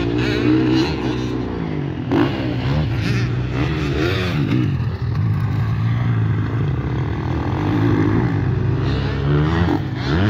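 Motocross bike engines revving hard on a dirt track. The pitch climbs and drops again and again as the riders open the throttle and shift or back off through the corners, with more than one bike heard at once.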